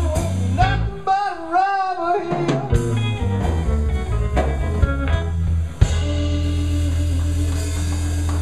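Live blues-rock trio of electric guitar, bass and drums playing. The guitar's lead line bends and wavers in pitch. About six seconds in, a sharp hit leads into a long held chord over steady bass.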